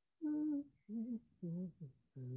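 A person's voice humming a few short notes in a row with brief gaps, the pitch wavering and stepping down from note to note.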